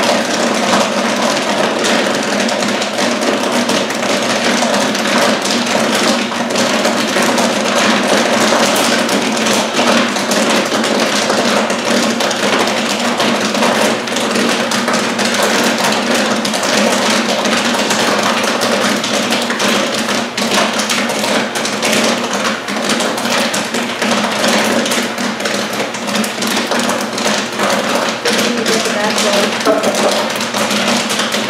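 Popcorn kernels popping rapidly and continuously in the kettle of a large commercial popcorn machine, a full 48-ounce batch at its peak, over a steady low hum.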